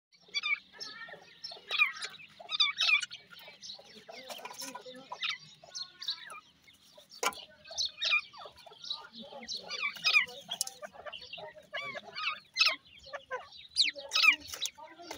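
Grey francolin chicks calling in a rapid run of short chirps and peeps that rise and fall in pitch while they spar with one another. There is a single sharp tap about seven seconds in.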